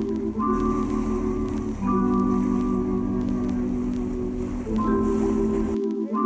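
Background music: sustained chords that change every second or two, with the low notes dropping out near the end.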